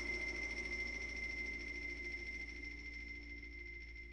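Wind band and percussion ensemble in a quiet passage: faint sustained ringing tones, one high and steady, with lower tones slowly fading away.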